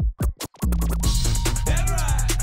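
DJ scratching and crossfader cutting on a turntable and mixer: a few short chopped hits with gaps between them, then a hip-hop beat drops in about half a second in, with scratch glides over it near the end.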